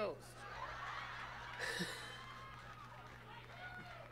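Comedy-club audience laughing after a punchline, a faint wash of crowd laughter that swells about a second and a half in and then slowly dies away.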